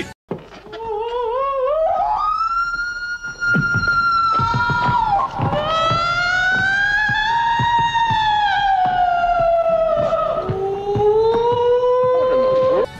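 A woman howling like a dog in long, wavering wails that climb, hold and sag in pitch, over a run of irregular knocking thumps.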